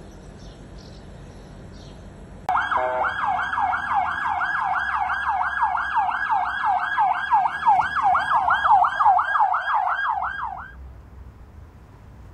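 Police car siren in a fast yelp, its pitch rising and falling about three times a second. It starts abruptly about two and a half seconds in and cuts off shortly before the end.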